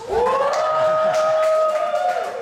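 A drawn-out vocal "ooooh" from onlookers that swoops up in pitch and is held steady for about two seconds before falling away.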